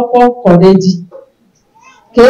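A woman's drawn-out voice through a handheld microphone, breaking off about a second in, followed by a pause of near silence.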